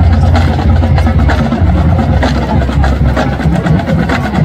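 Marching band playing loudly: a sustained low brass tone under repeated drum and percussion hits.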